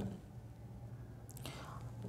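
A quiet pause in speech with a faint, steady low hum, and a soft intake of breath near the end, just before speaking resumes.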